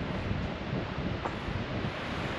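Strong wind blowing across the microphone: a continuous low rushing rumble that rises and falls unevenly with the gusts.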